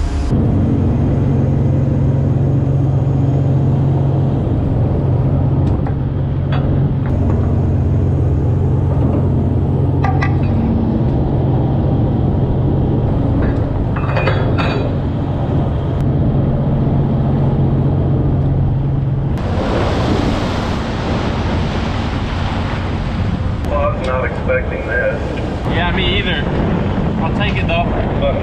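Steady low drone of a pollock trawler's engines and machinery on the open trawl deck. About two-thirds of the way through, a loud rushing hiss cuts in over it.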